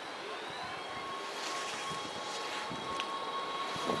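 NS Sprinter Lighttrain (SLT) electric multiple unit pulling away, its traction drive giving a high whine that rises a little in pitch early on, then holds steady as the level slowly grows.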